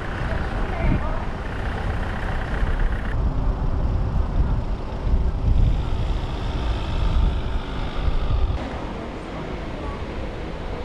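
Outdoor street sound: road traffic running past with a heavy low rumble and indistinct voices. The background changes abruptly about three seconds in and again near the end.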